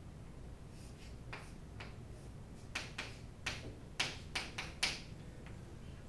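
Chalk writing on a chalkboard: a run of sharp taps and short scratches as strokes are drawn, sparse at first and coming thick and fast in the second half.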